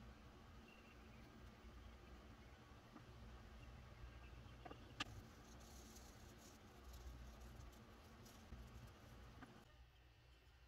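Near silence with a low hum, a single sharp click about halfway through, and faint scratching of sandpaper rubbed by hand over a small wood carving in the second half.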